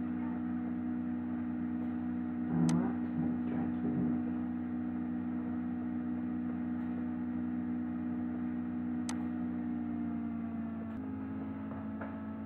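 Steady low electrical hum with a couple of short, sharp clicks, one about two and a half seconds in and one about nine seconds in.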